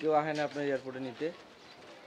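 A man's voice singing a slow tune in a few long, held notes, which stops a little over a second in.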